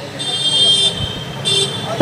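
A vehicle horn sounding twice: a longer steady blast, then a short toot about a second later, both at the same high pitch.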